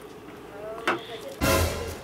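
Plastic baby bottle and formula dispenser being handled: a short click about a second in, then a brief, loud scuffing knock near the end.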